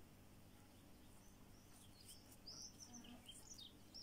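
Near silence with a faint steady low hum; in the second half a bird chirps faintly several times in short high notes.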